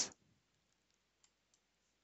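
A few faint, single computer mouse clicks, about a second apart, in an otherwise near-silent room.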